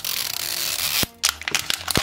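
Plastic film wrapper on a toy capsule ball being torn open by its pull tab: a steady rip for about a second, then the loose plastic crinkling as it is peeled away.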